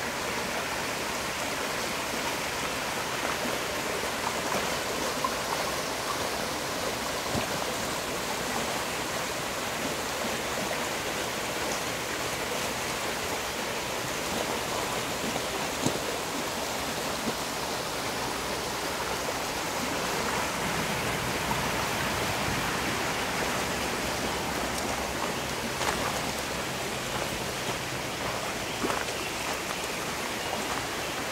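Shallow rocky creek running over stones: a steady rush of water, with a few faint scattered ticks.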